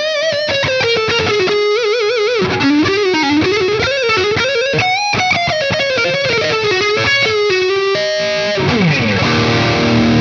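Solar X1.6 Ola electric guitar played through high-gain distortion: a single-note lead line with wide vibrato on the held notes. About eight and a half seconds in it slides down into heavier low chords.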